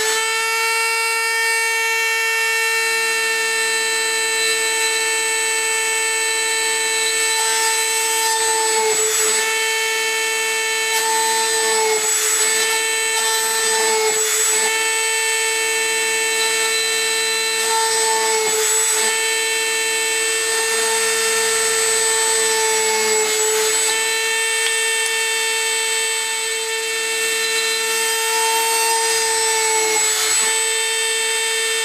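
Dremel rotary tool in a drill-press stand running at high speed with a steady high-pitched whine. Its pitch sags briefly several times as the tiny bit plunges through the copper-clad circuit board to drill component holes.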